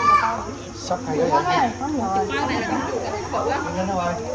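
Overlapping chatter of several children and adults talking and exclaiming at once, with high-pitched children's voices among them.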